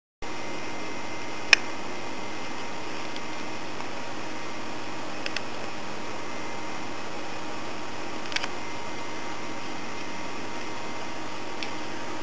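Steady hiss of a camera's recording self-noise with a faint steady whistle in it, starting abruptly just after the beginning, broken by a few sharp clicks, the loudest about a second and a half in. This is the poor sound quality and whistling noise that the recording could not get rid of.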